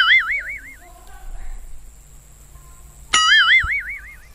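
Cartoon 'boing' sound effect: a sudden springy tone whose pitch wobbles up and down for about a second. It sounds once at the start and again about three seconds in.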